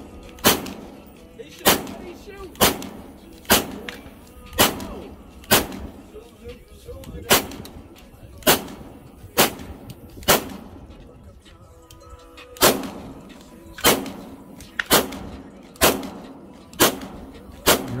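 Slow, steady semi-automatic fire from a compact pistol-style firearm: about eighteen single shots at roughly one per second. Each report ends in a short echo.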